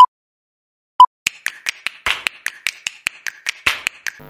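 Countdown sound effect of an intro animation: a short electronic beep, another a second later, then a quick run of sharp clicks, about six a second.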